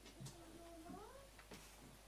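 Near silence with a faint wavering call that bends up and down in pitch for about a second.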